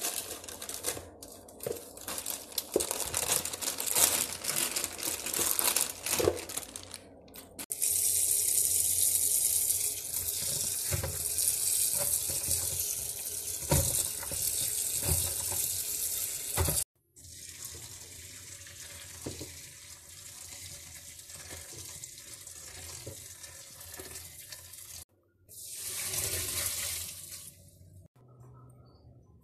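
Kitchen faucet running steadily onto noodles in a plastic colander, starting about 8 s in and cut off suddenly about 9 s later, with a shorter run near the end. Before it, a plastic noodle packet crinkles and tears as it is opened.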